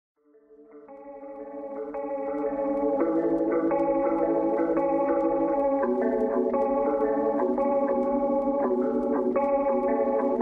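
Opening of an instrumental trap beat: layered sustained chords fade in over the first few seconds, then hold steady, changing about once a second, with no drums yet.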